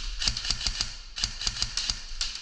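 Airsoft guns firing in short rapid bursts: a run of sharp clicks, several a second.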